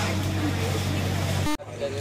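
Background voices over a steady low mechanical hum. The sound drops out abruptly about one and a half seconds in, then the hum and voices resume.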